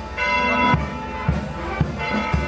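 Band music playing for a religious procession, with sustained brass-like tones over a low drum beat about twice a second.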